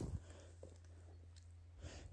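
Near quiet: a faint, steady low hum of background noise.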